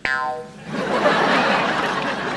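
A short pitched comedy sound-effect sting lasting about half a second, followed by a studio audience laughing loudly.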